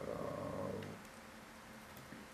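A man's drawn-out hesitation sound, a low steady hum like "эээ", lasting about a second before fading to quiet room tone.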